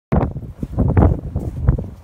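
Wind buffeting the microphone in uneven gusts, with a few crunching footsteps in snow.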